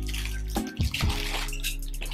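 Crinkly plastic packaging of a Victor wooden mouse trap rustling as it is handled and opened, over steady background music.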